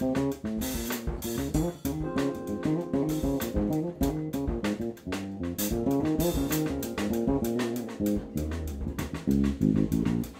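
Jazz-funk quartet playing live: a busy, repeating bass line over a drum-kit groove, with keyboard chords.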